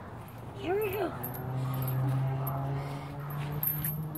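A child's short wordless call that rises and falls, about a second in, followed by a steady low hum lasting a couple of seconds.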